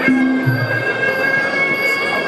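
Traditional Muay Thai sarama music: the pi java, a shrill reed oboe, holds a long high note over a low drum stroke.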